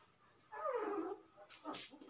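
A short squealing whine about half a second in that slides down in pitch, followed near the end by a brief rubbing hiss from a duster wiping the whiteboard.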